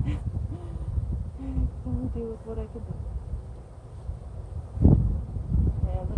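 Wind rumbling on the microphone, with a few short, faint pitched sounds in the first half and a thump about five seconds in.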